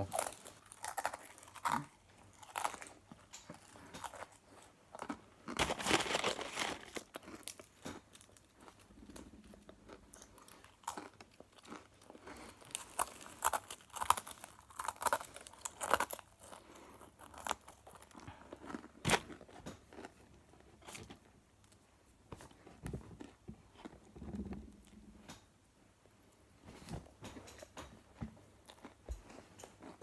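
Pretzel sticks being bitten, crunched and chewed in a hurry, mouthful after mouthful, as an irregular run of dry crunches.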